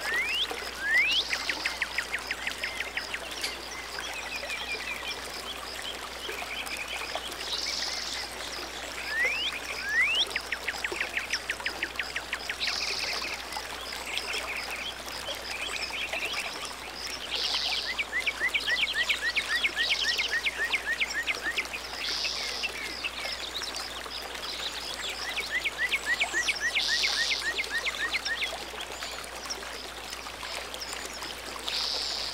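A songbird singing repeatedly, about four phrases, each a rising whistled note followed by a rapid trill. Under it, water trickles steadily.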